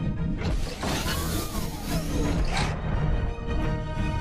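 Dramatic film score with a loud, rushing sci-fi whoosh from about half a second in, lasting roughly two seconds with a falling tone running through it.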